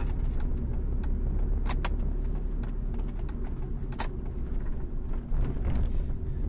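Steady low rumble of a moving vehicle, heard from inside, with a few light clicks about two and four seconds in.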